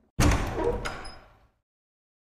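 Heavy wooden double door sound effect: one loud bang that dies away over about a second.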